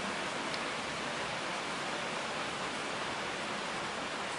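Steady, even hiss of background noise, with no distinct events.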